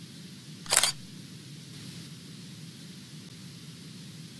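A short, sharp burst sound effect from a news logo sting, about a second in, over a steady low hum and hiss.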